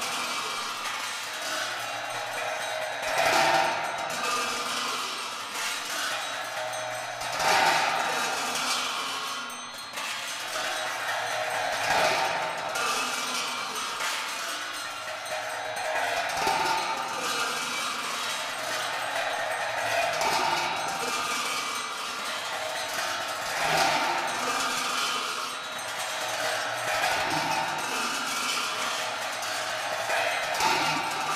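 Tibetan Buddhist ritual music played on large cymbals, clashed about every four seconds, each clash ringing on into the next, over a faint steady low tone.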